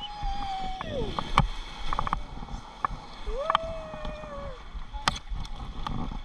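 River water rushing and gurgling around an inflatable raft, with sharp knocks of paddles. A person's voice holds two long notes over it: the first slides down about a second in, the second runs from a little past three seconds to about four and a half.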